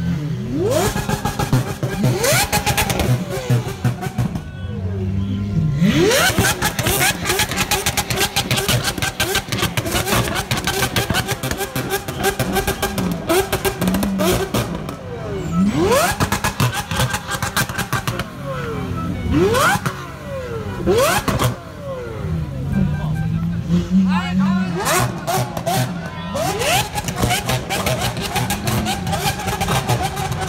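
Lamborghini Aventador V12 and other sports-car engines revving in repeated sharp blips as the cars pull away. Each rev climbs quickly and falls back, over a continuous engine rumble and crowd voices.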